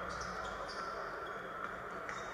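Basketball arena sound heard through a television speaker: a steady crowd murmur with a ball being dribbled on the hardwood court.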